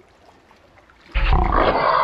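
A loud animal-like sound, about a second long, starts abruptly about a second in after a quieter moment.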